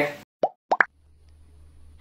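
Three short, sharp cartoon pop sound effects in quick succession about half a second in, the kind used for animated speech bubbles popping onto the screen. A faint low hum sets in after them.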